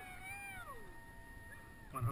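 Distant, drawn-out human cries, high and wavering, sliding down in pitch, with one held steady note that cuts off just before the end.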